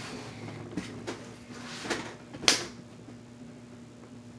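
A few light knocks and clicks of small objects being handled, the sharpest about two and a half seconds in.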